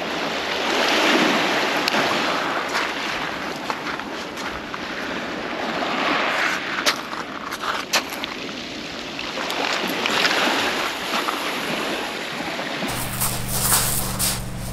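Small waves washing up and draining back over a shingle beach, the wash swelling and fading every few seconds, with a few sharp clicks of pebbles. Near the end a steady low hum comes in.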